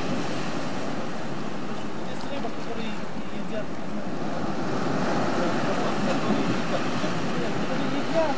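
Steady wash of sea surf on a rocky shore, an even noise that holds at one level throughout.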